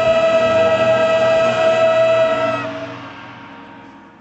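Choir and marching brass band holding the final chord of the piece. The chord cuts off about two and a half seconds in and dies away in the hall's echo.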